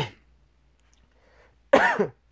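A man clearing his throat and coughing. One throat-clear trails off at the start, then there is a brief hush, and a short voiced cough comes near the end.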